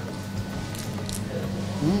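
A man chewing a bite of crisp cheese pide, with a few faint crunches, over a steady low hum. Near the end he gives an appreciative 'hmm' that rises and falls in pitch.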